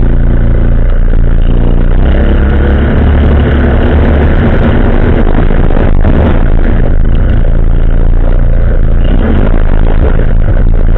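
ATV engine running close by as the quad is ridden slowly, its note picking up and getting rougher about two seconds in.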